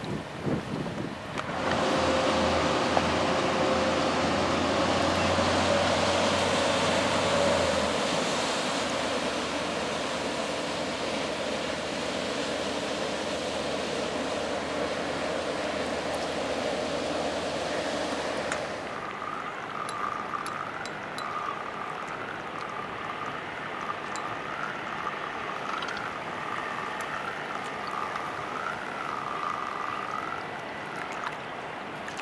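Wind and river water over the microphone, with a low, steady engine drone underneath from a passing cargo barge. About two-thirds of the way through the sound drops abruptly to quieter water noise with a faint wavering whine.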